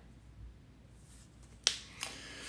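A single sharp click about one and a half seconds in, over faint room tone.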